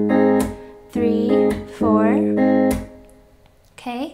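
Electric guitar, capoed at the third fret, fingerpicked on an F chord: a thumbed bass note on the low E string, then the three treble strings plucked together, then the hand slapped onto the strings to mute them. The ringing chord is cut off twice, about half a second in and again near three seconds in.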